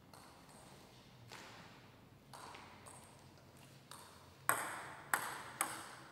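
A table tennis ball bounced three times in quick succession, about half a second apart, each a sharp ping with a short ring, as a player readies to serve. A few much fainter taps come before.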